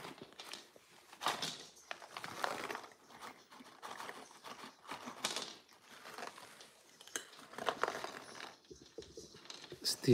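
Rustling and crinkling of a cat-treat packet, with small clicks and taps as dry cat treats are dropped onto a hard floor, in a series of short bursts.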